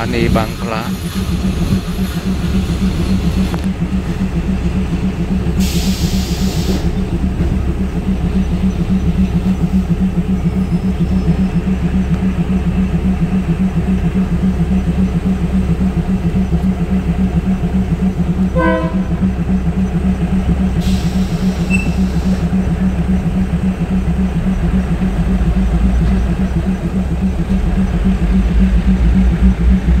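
Diesel train engine idling in a steady low drone while the train stands at a station, with a low pulsing that grows a little louder near the end.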